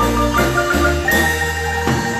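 Guatemalan marimba played by several players, mallets striking the wooden bars in a quick dance son over deep, held bass notes.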